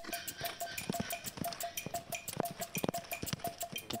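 Horse running under a rider, heard from the saddle: quick, regular hoofbeats mixed with rattling and jingling tack.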